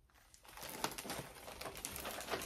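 Rustling and small clicks of shopping items and packaging being handled, starting about half a second in and going on irregularly.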